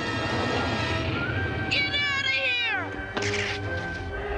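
A cartoon multi-headed dragon screeching: several shrieks layered together, each falling sharply in pitch, over dramatic orchestral score, followed by a short hissing rush about three seconds in.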